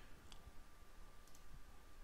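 Near silence with two faint computer mouse clicks, about a third of a second in and again just past a second.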